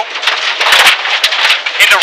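Cabin noise of a Dodge Neon SRT-4's turbocharged four-cylinder running hard at speed on gravel, with stones crackling and rattling against the car's underside.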